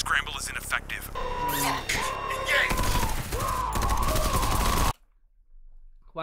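Heavy automatic gunfire from a film's sound mix, a dense fusillade of rapid shots with a wavering high wail over it, cutting off suddenly about five seconds in.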